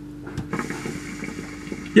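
Hookah bubbling as smoke is drawn through the hose, the water in the base gurgling steadily from about half a second in.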